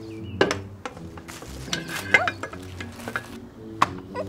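A string of sharp clicks and clatter from objects being handled and set down on a wooden picnic table, over steady held background tones.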